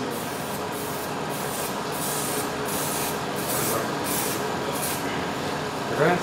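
Aerosol spray-paint can hissing in a series of short bursts, about a dozen, spraying paint onto a car fender.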